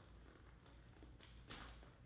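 Near silence with a faint low hum, broken by a few faint small clicks, the clearest about one and a half seconds in, as a double-end bag is unhooked from a metal swivel snap and another is hung in its place.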